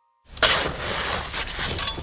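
Shovels digging into earth and stones: a dense, scraping noise that starts suddenly about a quarter of a second in, with a few sharper strikes near the end.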